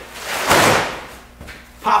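Collapsible pop-up drone landing pad being flung open, its fabric whooshing as the folded pad springs out. One swelling rush of noise about half a second in, lasting about a second.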